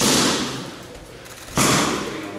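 Boxing gloves smacking into focus mitts: two single sharp punches, one right at the start and another about a second and a half later, each ringing out in the gym.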